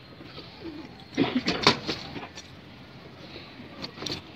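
Domestic pigeons cooing, with a brief burst of loud clattering knocks a little over a second in.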